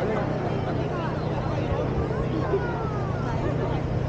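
Crowd chatter with no clear words, over a steady low engine hum.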